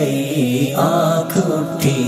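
A man singing an Urdu ghazal in nasheed style, drawing out a melodic phrase that dips and then climbs again about a second in.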